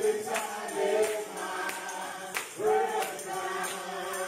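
Men's gospel vocal group singing together into microphones, several voices held in harmony, over a regular percussion beat of about one hit every two-thirds of a second.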